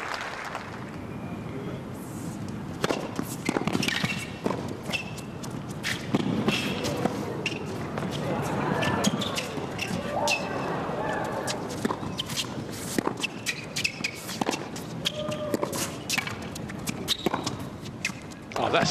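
Tennis rally on an indoor hard court: a serve about three seconds in, then a long exchange of sharp racket-on-ball hits and ball bounces at irregular spacing, with short squeaks of sneakers as the players move.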